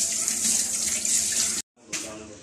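Kitchen tap running steadily into the sink, a continuous rush of water that cuts off abruptly about one and a half seconds in.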